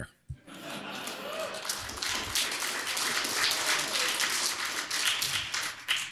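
Audience applauding, with crowd voices mixed in, starting about half a second in and holding steady until the speaker resumes.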